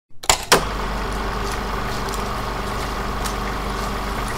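Two sharp clicks, then a Jeep Wrangler's engine idling with a steady, even hum.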